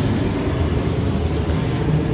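Steady low rumbling background noise with no distinct events, the same rumble that runs under the surrounding narration.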